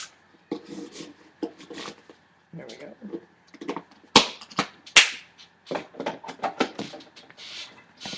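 Wet wipes being tugged free of their dispenser and handled: rustling and a string of sharp plastic clicks, the two loudest about four and five seconds in.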